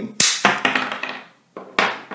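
Ratchet pipe cutter snapping through polypropylene pipe: a sharp plastic crack just after the start, a few fading clicks, and a second sharp crack near the end.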